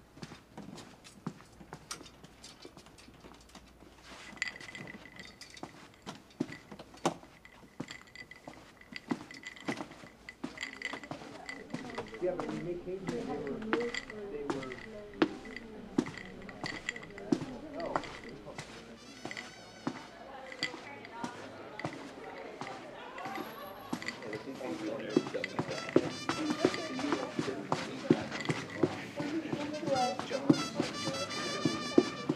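Footsteps along a hallway, with muffled voices and music behind a door growing louder through the second half. Near the end the music becomes mariachi music with wavering violins and horns.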